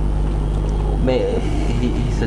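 A man speaking briefly about a second in, over a steady low hum that runs throughout.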